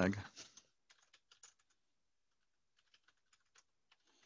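Computer keyboard typing: scattered light keystrokes in two short bursts, about a second in and about three seconds in, as a URL is typed.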